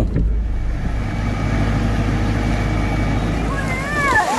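Steady low rumble of a car's engine and tyres on a wet road, heard inside the cabin, with a faint hiss above it.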